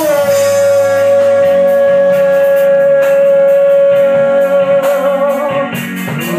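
A woman singing into a microphone holds one long high note for about five and a half seconds, with a slight waver near the end, over live band accompaniment.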